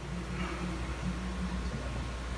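Quiet small-room tone between words: a steady low hum with a faint hiss.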